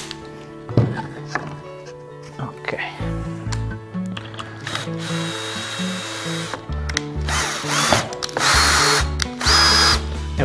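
18 V cordless drill-driver running in short bursts as it drives screws into a plywood jig: a longer burst of motor whine about halfway through and two short ones near the end, over background music.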